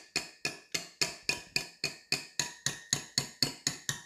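A stand mixer's wire whisk attachment being banged against the rim of a stainless steel mixer bowl to knock the stiff meringue off it. The taps come at a steady three or four a second, each one clanging and ringing briefly.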